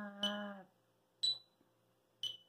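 A metronome clicking once a second at 60 BPM, each click with a short ringing tone, the one in the middle higher in pitch than the others. At the start a voice chants rhythm-reading syllables 'ta' on one steady pitch in time with the clicks: a held note ending, then a short one.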